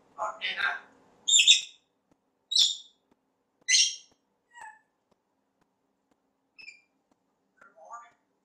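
African grey parrot vocalizing: a brief mumbled, speech-like utterance, then a string of short, high-pitched squawks and whistles about a second apart, the loudest about a second and a half in, trailing off into a few faint chirps.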